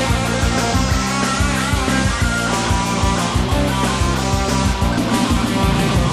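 Rock band playing an instrumental passage without vocals: guitar chords over bass and drums with a steady beat.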